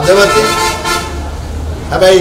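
A man speaking Sinhala, with a steady horn-like tone under his voice for about the first second.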